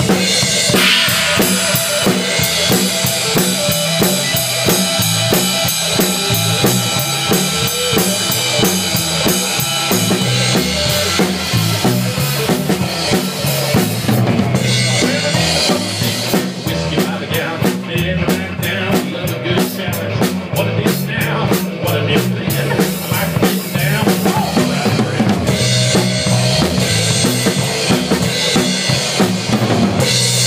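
Drum kit played live and heard close up from the drummer's seat: kick drum, snare and cymbals keeping a steady beat. The cymbal hits grow busier and brighter through the middle stretch.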